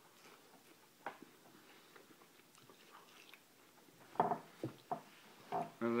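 A man chewing a mouthful of deep-fried rainbow smelt, eaten bones and all, with faint scattered clicks of chewing.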